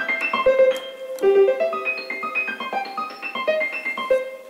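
Casio CTK-4200 keyboard playing a quick run of piano notes, several a second, with two piano voices layered together.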